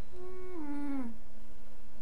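A single drawn-out whining cry, about a second long, held level at first and then sliding down in pitch before it stops, over a steady faint hum.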